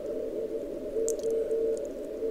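Weak Morse code (CW) signal on the 40 m band from an Elecraft K3 receiver: a keyed tone of dots and dashes barely above a steady hiss of band noise, heard through a narrow CW filter. It is received on an MFJ-1886 pixel loop antenna and sits less than an S unit over the noise.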